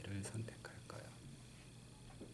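A voice speaking softly, almost a whisper, fading out within the first second, then a faint steady low hum.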